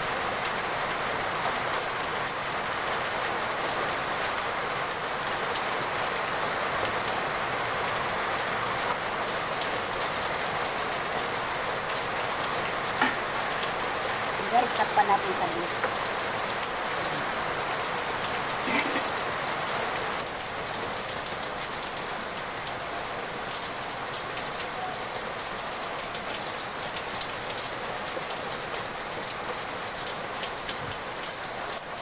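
Steady rain falling, a continuous even hiss. A few brief clinks of a metal spatula and pot lid come through around the middle.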